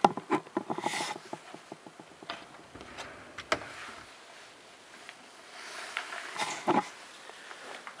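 Clothes rustling and swishing, with a run of small knocks and clicks from handling close to the microphone, as someone gets changed.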